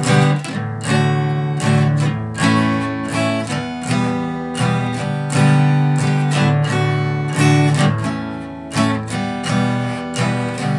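Acoustic guitar played as a strummed chord accompaniment, about two strums a second, moving through a sequence of basic chords.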